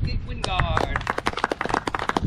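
A small group of people clapping, a rapid irregular patter of hand claps that starts about half a second in. A brief voice sounds as the clapping begins.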